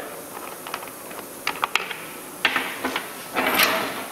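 Small metal pipe fittings being handled on a workbench: a few light metallic clicks, then two short scraping rustles about two and a half and three and a half seconds in.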